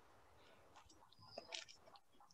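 Near silence, with a few faint short rustles about a second and a half in: carded wool being pulled apart by hand into fluffy tufts.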